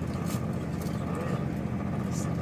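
Steady running rumble of a moving train heard from inside the carriage, with a faint steady whine above it.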